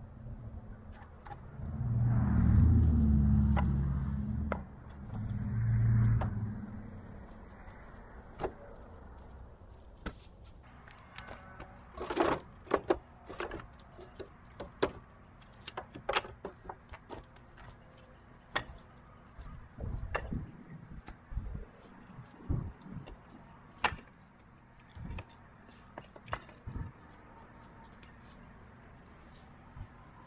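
Split firewood pieces knocking and clattering as they are handled and stacked, irregular sharp knocks from about ten seconds in. Before that, two loud low rumbles, the first lasting a couple of seconds, the second shorter.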